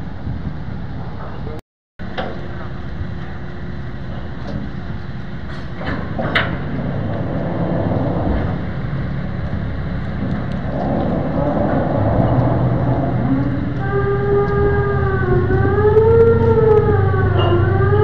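Low, steady rumble of the docked ferry MV Virgen Peñafrancia IX's engines as its mooring line is being cast off, with a brief dropout about two seconds in. In the last few seconds a pitched, siren-like tone slowly rises and falls over the rumble.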